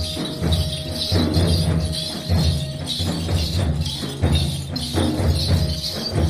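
Folk dance music with heavy drumming and jingling in a steady beat, a held tone sounding over it in the first half.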